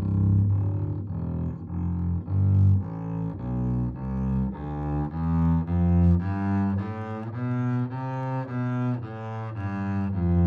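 Double bass playing a solo melody with the bow: a line of deep, sustained notes, changing about twice a second.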